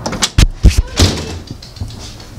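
Storm door swinging shut behind a cat: a quick cluster of about four sharp knocks and thuds, half a second to a second in.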